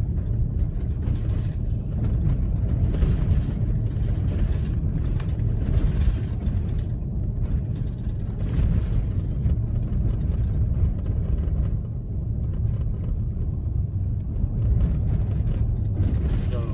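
Steady low rumble of a car driving on a gravel road, heard from inside the cabin: tyres on gravel and engine running at a constant low speed.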